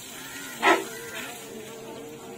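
A brief, loud sharp sound about two-thirds of a second in, followed by a steady insect-like buzz of one pitch that carries on.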